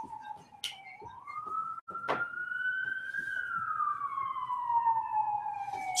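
Emergency-vehicle siren wailing, one slow tone that dips, rises for about two seconds, then falls slowly. Two sharp clicks come early on.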